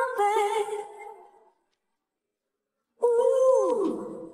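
An isolated female lead vocal, stripped from the band mix, holds a note with vibrato that fades out about a second and a half in. The audio cuts out to dead silence from the stripping process. Near the end a second held note comes in and slides down in pitch, with a thin hissy edge left by the vocal separation.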